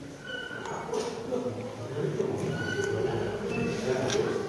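Indistinct chatter of several people's voices, with a few short high-pitched calls.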